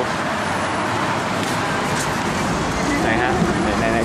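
Steady road traffic noise from a busy city street, a constant wash of passing vehicles.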